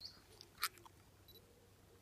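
Mostly quiet, with a single sharp click from a DSLR camera shutter about two-thirds of a second in and a few fainter ticks around it.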